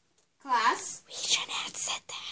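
A voice: a short voiced sound with sliding pitch about half a second in, then whispering.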